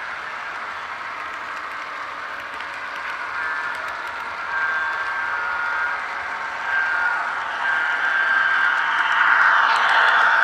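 Model trains running, heard from a camera riding on one of them: a steady rolling rattle of wheels on track that grows louder, loudest near the end as a second train passes close alongside on the next track. Short thin steady tones come and go from about three seconds in.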